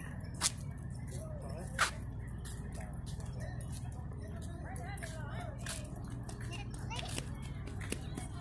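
Faint, distant voices over a steady low outdoor rumble, with two short sharp clicks about half a second and two seconds in.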